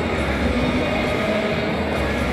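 Steady, loud din of a crowded indoor sports arena: crowd noise blended with the amplified PA sound, echoing through the large hall.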